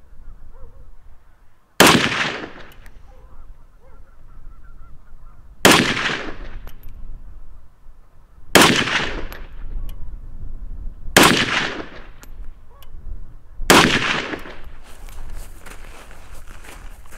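Soviet SKS semi-automatic rifle firing 7.62×39 rounds: five single shots spaced about three seconds apart, each a sharp crack with a short echo trailing off.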